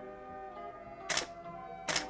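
Camera shutter clicking twice, two short sharp clicks a little under a second apart, over background music.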